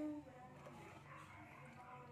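Quiet room tone. A woman's held vocal sound trails off at the very start, with no clear sound of the spoon in the cocoa bag.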